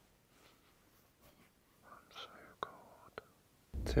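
Near silence in an anechoic room, broken by a faint whisper about two seconds in and two soft clicks, before a man starts speaking at the very end.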